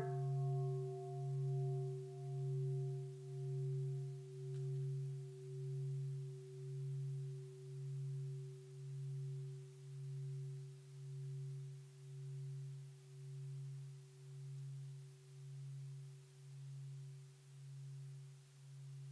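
Large metal bowl bell struck once, then ringing on with a low hum that swells and fades about once a second as it slowly dies away, its higher overtones fading within the first few seconds. It is a mindfulness bell, sounded for the listeners to stop and return to themselves.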